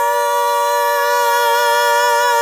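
Two female voices holding one long, steady note together, unaccompanied, in the opening of a huasteco-style song.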